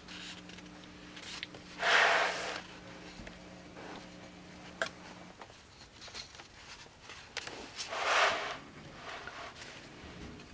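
Thick art-journal pages being turned by hand, two papery rustles about two seconds and eight seconds in. A low steady hum from a washing machine running in the background cuts off about halfway through.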